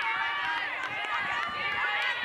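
Several high voices shouting and calling out over one another on an open sports field, with no pause.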